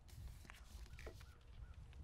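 Near silence: a faint low outdoor rumble with a few faint, short bird calls.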